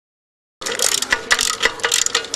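Ratchet wrench clicking rapidly, about five or six clicks a second, starting about half a second in, as it backs out a binding propeller bolt.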